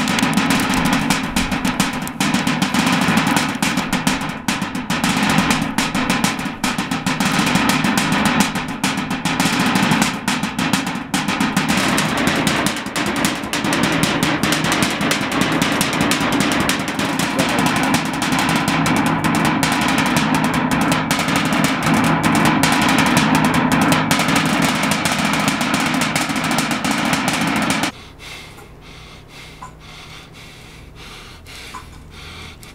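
Fast, driving percussion drumming of the kind that accompanies a Samoan fire knife dance, a dense run of rapid strokes at a steady pace. It cuts off suddenly near the end.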